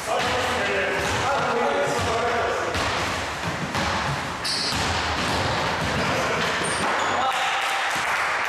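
A basketball bouncing on a wooden gym floor during play, with players' voices calling out. A few short high squeaks come in the second half.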